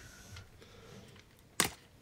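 A single sharp click about one and a half seconds in, against quiet room tone.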